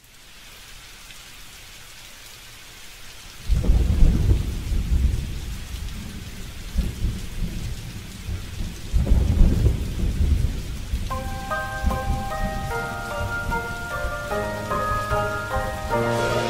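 Steady rain with two heavy rolls of thunder, the first breaking suddenly about three and a half seconds in and the second about nine seconds in. Soft pitched notes of music come in over the rain from about eleven seconds.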